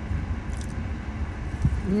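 Steady low rumble inside a car's cabin, with a faint click about half a second in and a soft thump near the end, followed by a hummed "mmm".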